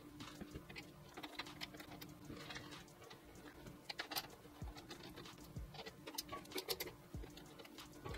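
A screwdriver turning the screws that hold the top panel of a Fractal Design Meshify 2 Compact PC case: faint, irregular small clicks and scrapes of metal on metal, over a faint steady hum.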